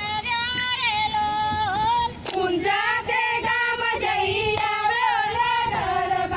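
A high voice singing a Navratri garba song with a wavering melody, over a few sharp percussive beats.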